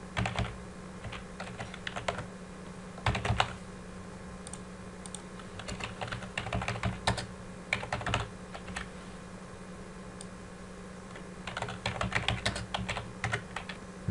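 Typing on a computer keyboard: several bursts of keystrokes with pauses between them, the longest run about six to nine seconds in, over a faint steady hum.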